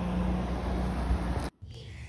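Steady low vehicle rumble with a constant hum, which cuts off abruptly about one and a half seconds in.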